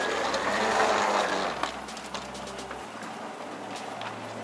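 Inclined moving walkway in motion, a mechanical whirring rattle that swells in the first two seconds and then settles, over a low hum that stops near the end.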